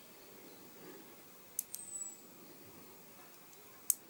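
Small neodymium ball magnets clicking as a sheet of them is bent inward by hand: two sharp ticks close together about one and a half seconds in and one more just before the end, with faint handling in between.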